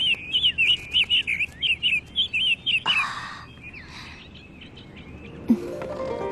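A small songbird chirps rapidly, a dense run of short high notes, for about the first three seconds. A brief noisy burst follows, then soft music comes in near the end.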